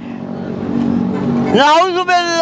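A motor vehicle's engine passing by, its steady hum growing louder over about a second and a half, before a man's voice starts.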